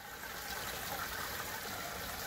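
Free-run red wine pouring from a bladder wine press's spout into a strainer over a bucket, a steady stream splashing. The wine drains by gravity alone, with no pressure yet on the press's bladder.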